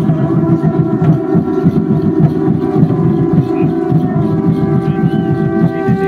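Conch shell trumpets blown in one long held note over a fast rolling drum beat: the ceremonial conch call that closes the dance.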